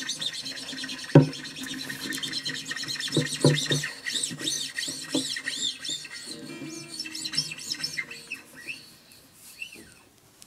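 Acoustic guitar strings rubbed along their length with the fingers: a run of quick squeaky scrapes rising and falling in pitch. The open strings ring low a few times, loudest about a second in.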